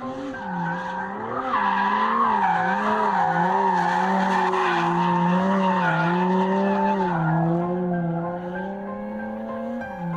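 Aston Martin One-77's V12 engine revving hard as the car drifts, its pitch rising and falling with the throttle, with tyres squealing and skidding on tarmac. It is loudest through the middle of the slide and eases off after about seven seconds.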